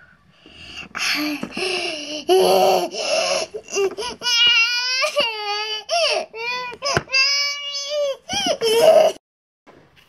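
A baby's crying: a run of sobbing cries that rise into two long, wavering wails, stopping about nine seconds in.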